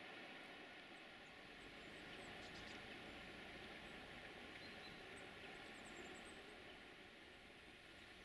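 Near silence: faint steady outdoor background hiss, with a few faint, short, high chirps in the middle.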